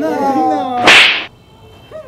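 One loud smack of a hand striking a full-face motorcycle helmet about a second in, lasting a fraction of a second. Just before it, a voice calls out 'no' with a falling pitch.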